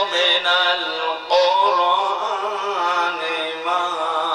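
A man's voice chanting Quranic verses melodically in long, wavering held notes, amplified through a microphone.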